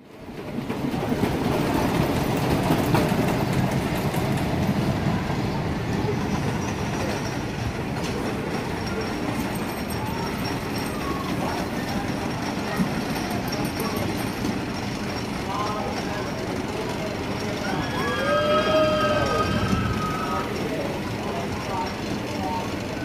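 Roller coaster train rumbling steadily along its wooden track. Near the end, a drawn-out voice rises and falls in pitch.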